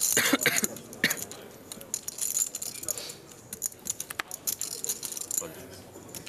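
Clay poker chips clicking and clattering as they are handled and stacked at the table, a quick, uneven run of small clicks.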